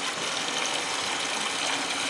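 Steady rush of circulating water in an aeroponic system's nutrient reservoir: return water splashing down from the grow tray, keeping the reservoir stirred and aerated.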